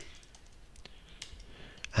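Computer keyboard being typed on: a string of faint, irregular key clicks.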